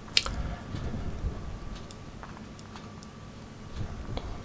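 Footsteps on wet, seaweed-covered stones and pebbles: a few faint clicks and squishes, over a low wind rumble on the microphone.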